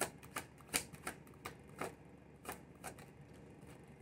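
A tarot deck being shuffled and handled by hand: a string of soft, irregular card clicks and snaps, roughly two or three a second.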